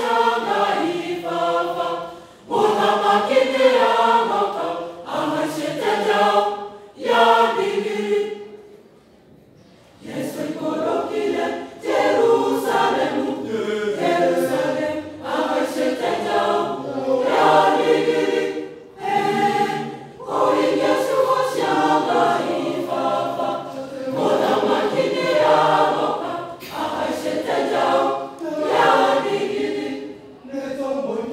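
A choir singing in short phrases. About eight seconds in, the singing stops for a moment and then starts again.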